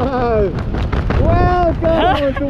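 Excited wordless yells and whoops from a tandem skydiver under an open parachute, one falling cry at the start and a longer held cry a little past the middle. Wind rumbles on the microphone throughout.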